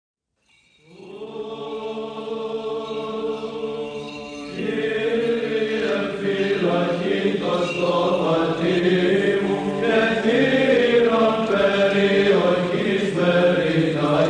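Byzantine Orthodox chant sung by a group of voices. It opens on a steady held note, and about four and a half seconds in more voices enter and the melody begins to move over it.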